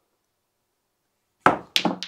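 Snooker balls colliding: after a silent stretch, a sharp click of the cue ball striking the black about a second and a half in, followed quickly by a second, slightly softer click.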